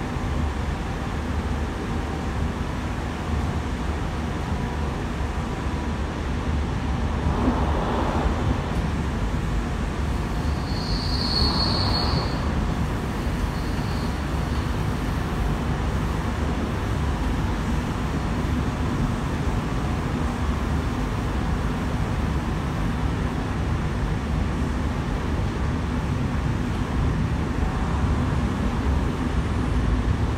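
Steady rumble of a Sydney Trains K set double-deck electric train running at speed, heard from inside the carriage, with a brief high wheel squeal partway through.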